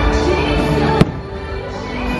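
An aerial firework shell bursting with one sharp bang about a second in, over loud show music.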